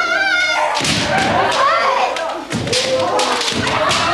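Kendo sparring: a long, wavering kiai shout at the start and a second shout about a second and a half in, among repeated thuds and cracks of bamboo shinai strikes and feet stamping on the wooden dojo floor.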